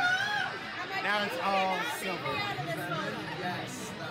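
Several people talking at once around a table: overlapping conversation and chatter.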